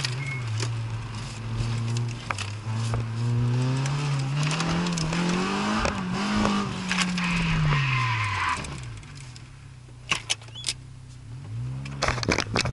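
Citroën Saxo VTS's 1.6-litre 16-valve four-cylinder engine heard from inside the cabin, its pitch rising and falling with the throttle through a slalom run. About eight and a half seconds in it drops to a low, quieter note, and a few sharp clicks follow near the end.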